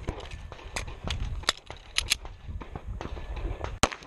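A string of handgun shots from a semi-automatic pistol, unevenly spaced, with a quick pair about two seconds in and the loudest shot near the end.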